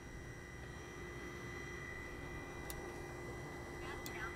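Faint steady background noise with a low steady hum and a thin high tone, and no distinct event.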